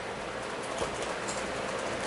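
Steady room hiss of a meeting-room recording in a pause between words, with a couple of faint clicks about a second in.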